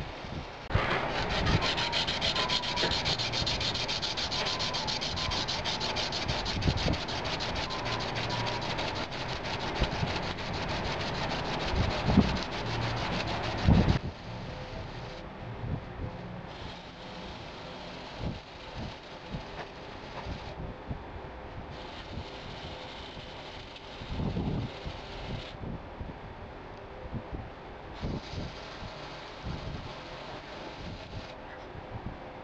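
Hand-sanding the edges of a knife blank's handle clamped in a vise, smoothing them off. Fast back-and-forth rubbing strokes, steady and strongest for the first half, then lighter and broken up by short pauses.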